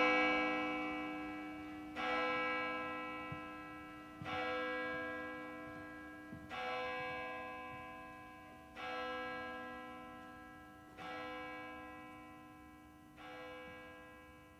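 A bell struck at the same pitch about every two seconds, each stroke ringing on and fading before the next, the strokes growing fainter toward the end.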